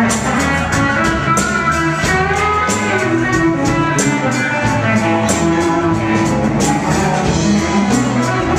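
Live rock band playing an instrumental passage with no singing: electric guitar, keyboard, bass and drum kit, with steady drum and cymbal hits.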